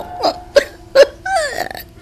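A person making a few short guttural vocal sounds, brief grunts with a falling pitch and then a throaty rattle near the end, over a steady held note of background music.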